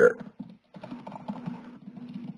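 Fast typing on a computer keyboard: a quick, irregular run of key clicks as a word is entered, starting about half a second in, over a faint steady low hum.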